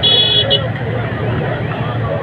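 A high-pitched vehicle horn honks twice, a toot of about half a second then a very short one, over the continuous chatter of a large crowd.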